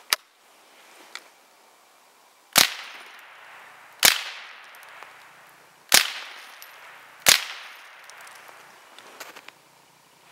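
Four .22 rifle shots, irregularly spaced about one and a half to two seconds apart, each with a short trailing tail, as the bullets smash a ceramic mug.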